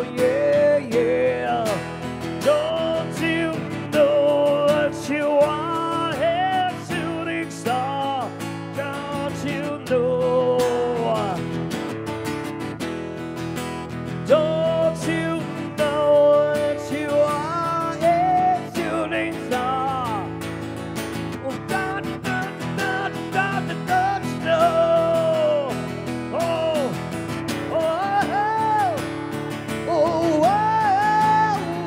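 Live acoustic guitar played throughout, with a wavering melody line above the chords that sounds like a voice singing without clear words.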